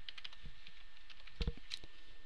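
Typing on a computer keyboard: a run of quick, light key clicks, with one louder knock about one and a half seconds in.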